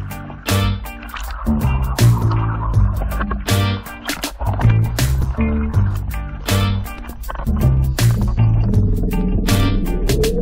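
Background music with a steady, driving beat and a bass line.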